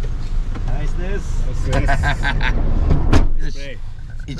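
Low, steady rumble of a van's engine idling, heard from inside the cabin under voices and laughter, with one sharp click about three seconds in.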